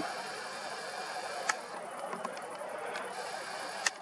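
Low, steady outdoor evening background hiss with two sharp clicks, about a second and a half in and again near the end, from handling the camera as it zooms in on the mast.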